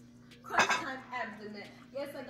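A short clatter about half a second in, followed by a person's voice, over a steady low hum.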